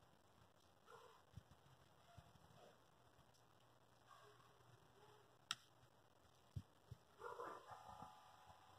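Near silence, broken by faint scattered sounds: a sharp click about five and a half seconds in and a few soft thumps shortly after.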